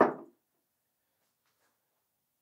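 A man's voice makes a brief sound right at the start, then near silence: room tone.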